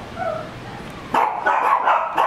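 A small dog barking in a quick run of several sharp barks starting about a second in, after a short faint whine.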